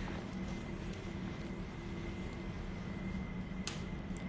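Steady low background hum with a faint steady tone, and a single sharp click a little before the end.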